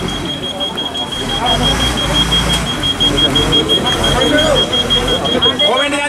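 Truck reversing alarm beeping rapidly and evenly at one high pitch as a Lanka Ashok Leyland truck backs up, over its engine running.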